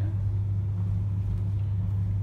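Steady low hum.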